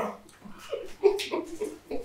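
A man's stifled laughter behind his hand, coming in several short, quiet bursts.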